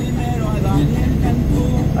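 Steady low engine and road rumble inside a semi-truck cab at highway speed, with a faint voice or singing over it.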